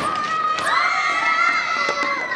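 A group of schoolchildren shouting and cheering together, with long, high, held cries through most of it.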